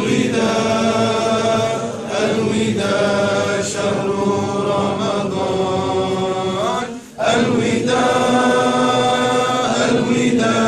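Unaccompanied male voices chanting a nasheed in long, drawn-out held notes. There is a brief pause for breath about seven seconds in, then the chant resumes.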